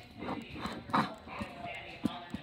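Indistinct chatter in a gymnastics gym with a few short knocks, the loudest about a second in.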